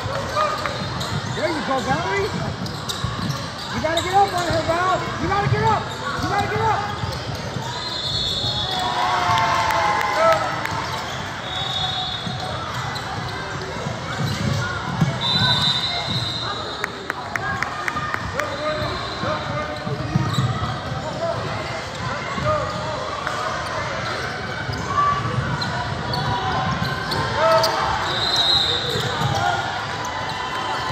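Basketball game play on a hardwood gym floor: a ball bouncing, and sneakers giving short high squeaks every few seconds. Players and spectators talk and call out throughout.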